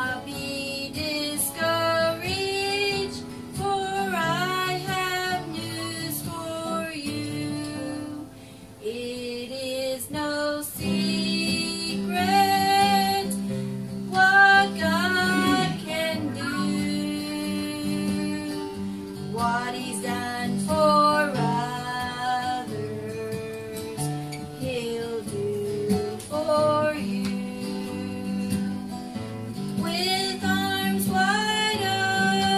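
A woman singing a slow song to acoustic guitar accompaniment, with a brief pause in the voice about eight seconds in.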